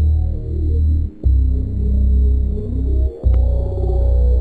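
French house electronic music from a live DJ mix: a heavy, sustained synth bass under a busy midrange synth pattern. The bass cuts out briefly about every two seconds and comes back with a sharp hit.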